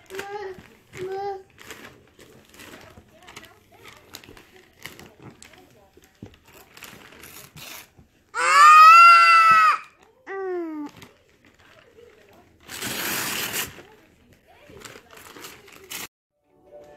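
Gift wrapping paper being crinkled and torn off a large box by a baby, with short child vocal sounds. About halfway there is a loud, high-pitched squeal, then a shorter falling cry, and a second or so later a long noisy rip of paper.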